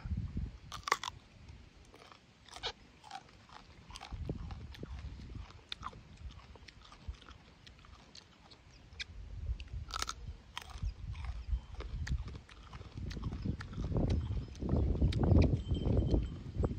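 Close-up crunching and chewing of a crisp raw green fruit: scattered sharp crunchy bites and chews, with a louder low rumble building toward the end.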